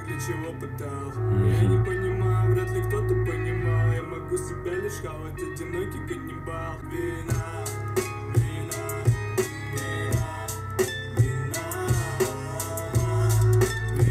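Rap track playing: a beat with guitar and a heavy bass line, with sharp hits growing denser in the second half.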